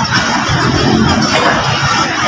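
Passenger train coaches rolling past close by as the train pulls out, a loud, steady rumble and clatter of wheels on the rails.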